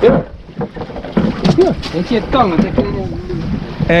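Indistinct talking on a small boat at sea, with wind buffeting the microphone and a steady background of wind and water.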